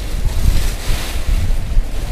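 Uneven low rumble of air buffeting the microphone (wind noise) with a faint hiss above it, loud throughout.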